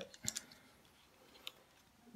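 A few faint, small plastic clicks from the Joby GripTight phone clamp being handled as its screw is loosened to change the mount's angle: several close together near the start and one more about midway.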